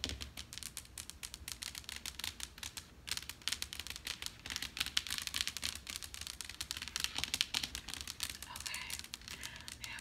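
Long acrylic fingernails tapping and scratching on a wood-look floor: a dense, steady run of quick clicks and scrapes.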